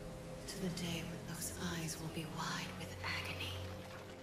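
A woman's quiet, breathy voice speaking close to a whisper, in several short phrases: an anime villain's dying words.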